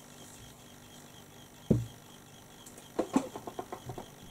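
A single dull thump a little under two seconds in, then a quick, irregular run of small clicks and taps close to the microphone near the end.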